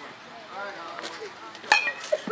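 A single sharp metallic impact with a brief ring, about three-quarters of the way in, over faint voices.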